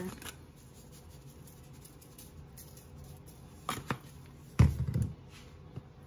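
Quiet room tone broken by a few short knocks and rattles past the middle as plastic spice shakers are handled, shaken and set down on the stovetop.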